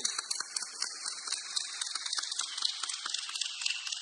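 A pause in speech filled with a steady high-pitched hiss, with faint scattered crackling and rustling beneath it.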